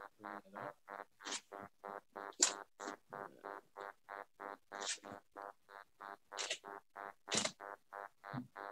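Faint, choppy video-call audio: a pitched sound broken into short, even pulses about four times a second.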